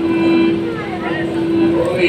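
A man's voice in a hall, in short broken phrases over a steady held tone that carries on from the music before.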